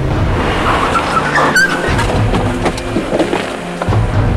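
Background drama music over the engine and road noise of a Toyota Camry sedan driving away.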